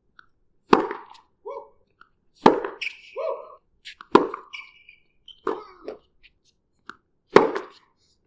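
A tennis ball struck by rackets and bouncing on a hard court in a baseline rally: five sharp pops, one every second and a half or so, with short rubber-sole squeaks between the shots.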